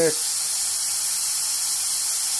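A steady high-pitched hiss, even and unchanging, with no other sound apart from the end of a spoken word at the very start.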